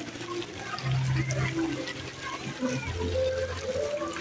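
Water running and splashing at a children's splash pool, with children's voices in the background.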